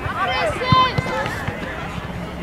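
Footballers shouting and calling to each other in high voices during play, with a few short dull thumps, the loudest about three quarters of a second in.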